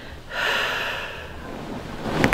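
A person's long, breathy exhale, like a sigh, starting about a third of a second in and fading away, during hands-on neck and back work on a chiropractic table. No joint crack is heard.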